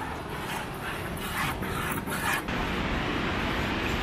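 Cow being hand-milked into a plastic bucket: a few short squirts of milk hitting the bucket in the first half. About two and a half seconds in, this gives way to a steady rush of outdoor background noise.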